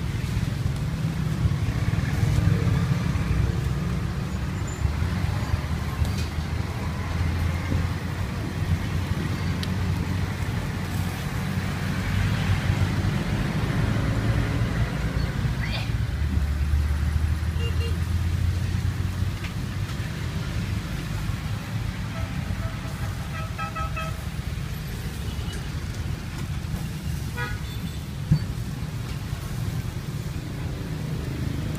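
Street traffic: vehicle engines running and passing close by, with short horn toots twice in the second half.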